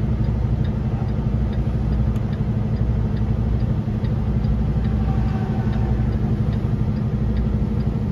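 Semi-truck diesel engine running steadily at low speed, heard from inside the cab. A light, regular ticking about twice a second runs over it.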